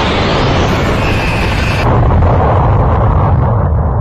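Cartoon energy-beam blast sound effect: a loud, continuous explosive rushing noise, heavy in the low end, whose highest part drops away a little under two seconds in.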